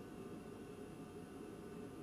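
Faint, steady cabin hum and hiss of the space station's ventilation fans and equipment, with several steady tones and no other sound.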